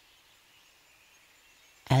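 Near silence: a faint steady background hiss in a pause of the storytelling voice, which comes back in near the end.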